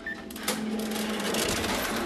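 Cash register being worked: a fast, even run of mechanical clicking and rattling, with a louder clack near the end as the cash drawer comes open.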